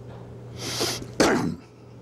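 A man's breathy intake, then one sharp, loud cough a little past a second in.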